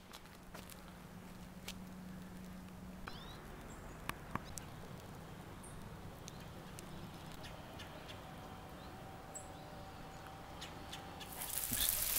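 Faint outdoor background with a low steady hum and scattered small clicks. Near the end, a hiss of water spraying from a hose nozzle starts and quickly grows louder as the water hits the shrubs.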